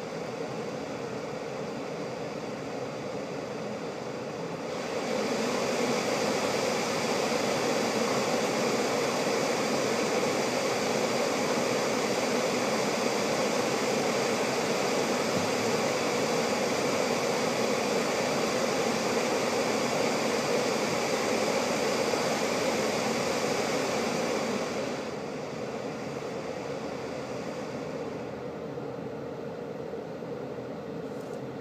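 Tesla Model S air conditioning running at full power: a steady rush of fan air with the compressor, which steps up louder about five seconds in and falls back to a lower level about twenty-five seconds in.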